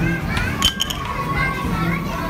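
Busy arcade ambience with children's voices and chatter, and a quick run of sharp clicks a little under a second in.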